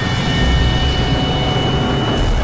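Sound effect of a small tornado funnel spinning across open ground: a loud, low rushing roar of wind with a thin, steady high tone running over it.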